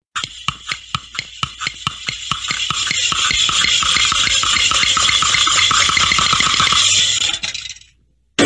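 A cartoon sound effect: separate clicks that speed up over the first few seconds and merge into a continuous harsh rattle, which holds and then fades out near the end.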